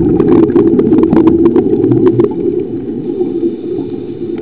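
Muffled, rumbling water noise picked up by a camera underwater, with many sharp clicks and crackles over it; it is loudest over the first two seconds, then eases.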